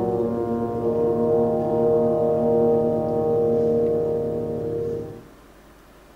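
Tubas and trombones holding a sustained low chord, which fades away about five seconds in.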